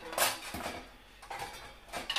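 Kitchenware clattering and clinking as it is moved about in a cupboard: a few separate knocks, the loudest just after the start.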